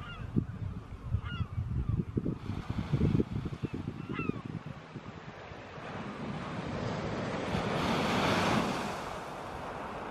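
Small sea waves breaking and washing up a shingle beach, one wash building to its loudest near the end and then easing. Wind buffets the microphone through the first half, and a bird gives several short calls in the first few seconds.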